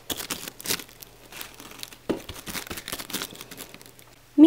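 Irregular crinkling and rustling with small clicks, as of something being handled close to the microphone.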